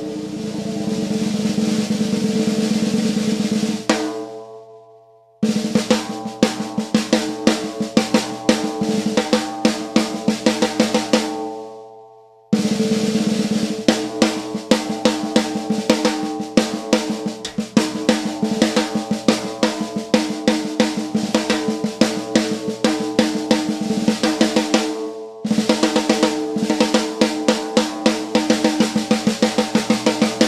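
BL Drum Works custom snare drum played with sticks, snares engaged and tightened fully, head unmuffled: a loud roll at the start, then passages of accented single strokes and rolls, broken by short pauses about 4, 12 and 25 seconds in. The unmuffled head's overtones ring on steadily under the strokes.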